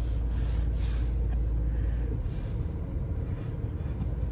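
Steady low rumble inside a car cabin, the car standing still with its running noise holding even throughout.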